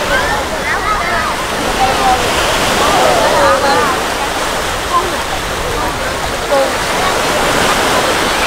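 Small surf breaking and washing up the beach in a steady hiss, with the scattered voices and calls of many beachgoers over it.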